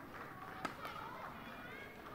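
A badminton racket strikes a shuttlecock once, a single sharp crack about two-thirds of a second in. Behind it is the faint background of a sports hall with distant voices.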